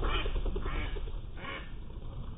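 Mallard ducks quacking, three short calls, over a steady low rumble.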